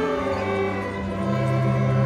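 Student string orchestra playing sustained chords, violins and violas over cellos and double bass, with a new low note coming in about a second in.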